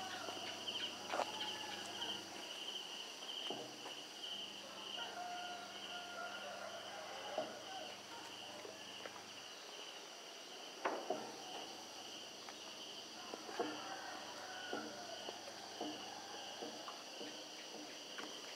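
A steady chorus of insects trilling, a high, rapidly pulsing buzz that never lets up. A few faint sharp knocks stand out over it, one about seven seconds in and another near eleven seconds.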